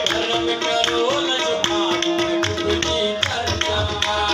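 Live qawwali music: harmonium holding steady notes over tabla drumming, with a melodic line bending up and down.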